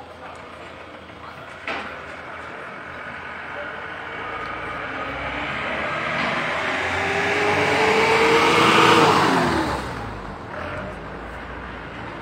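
A motor vehicle approaching and passing close by: its engine grows steadily louder, peaks about nine seconds in with the pitch dropping as it goes past, then fades quickly. A short knock is heard about two seconds in.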